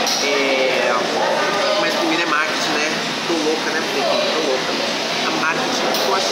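Indistinct chatter of several people talking at once over a steady room noise, with no single clear voice.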